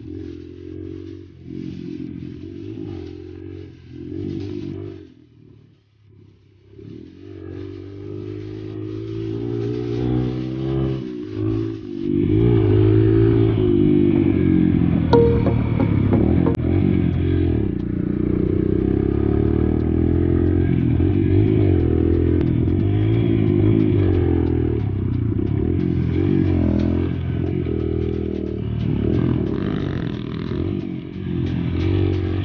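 Dirt bike engine on a rough trail, revving up and down with the throttle. The revs drop off about five seconds in, build back over the next few seconds, and the engine runs harder and louder from about twelve seconds on.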